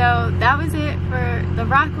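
Steady low drone of a Ford 6.0 Powerstroke V8 turbodiesel pickup running, heard from inside the cab, under a woman talking.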